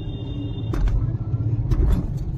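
Low rumble of a car driving slowly, heard from inside the cabin, swelling twice, with a couple of faint knocks.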